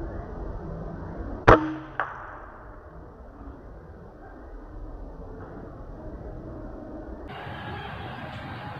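Air rifle shot: one sharp crack about one and a half seconds in that rings on briefly, followed half a second later by a fainter knock.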